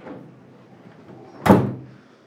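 A wooden door slammed shut once, about one and a half seconds in, with a short ringing decay.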